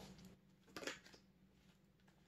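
Near silence: room tone, with one faint, brief sound a little under a second in.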